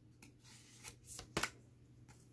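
Oracle cards being handled and drawn from the deck: a few soft flicks and rustles, with a sharper snap of a card about 1.4 s in.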